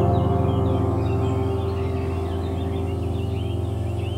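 Calm relaxation music: a held piano chord slowly dying away, with birds chirping lightly over it.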